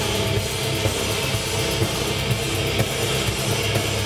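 Live heavy metal band playing loud with no vocals: distorted electric guitar and drum kit, heard from the crowd.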